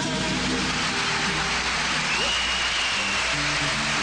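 Audience applause over the band's last few low instrument notes as the song ends. A high held tone, like a whistle, sounds for about a second midway.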